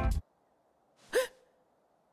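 A single short, surprised gasp from a character's voice about a second in, its pitch dropping and then holding briefly. The background music stops just before it.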